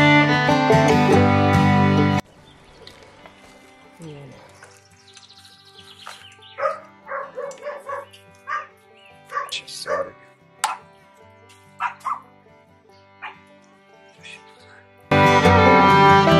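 Fiddle-led bluegrass music stops abruptly about two seconds in. In the quieter stretch that follows, a dog gives a run of short, high yips and barks. The music comes back near the end.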